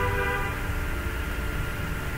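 Steady low hum with faint hiss and a few constant tones underneath: the background noise of a home voice-over recording, with no clicks or other events.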